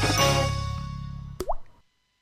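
Closing theme music fading out, ending with a short rising 'bloop' sound effect like a drop plopping into liquid about a second and a half in.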